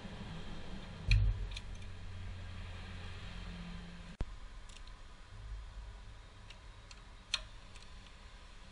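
Hand tools and metal parts being handled on an engine's valve cover: a few separate sharp clicks, with a dull thump about a second in, over a low steady hum.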